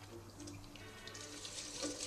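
Faint sound of water running into a top-loading washing machine, heard from a film playing in the room, with a faint steady tone of background music.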